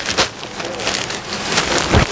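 Rustling and crackling of silk sarees being handled and laid out, with irregular dense crinkles that are loudest in the last half second.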